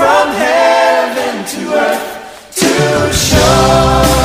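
Live worship music: a group of voices singing with almost no accompaniment. About two and a half seconds in, the bass and drums come back in under the singing.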